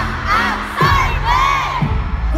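Arena crowd of concert fans screaming and cheering, with long high-pitched screams rising and falling, over loud amplified concert music with a heavy, steady bass.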